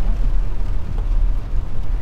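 Steady low rumble of road and engine noise inside the cabin of a moving Kia Soul on a wet road.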